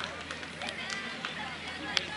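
Scattered distant voices of players and spectators calling out around an outdoor football pitch, with a few sharp knocks, the loudest near the end.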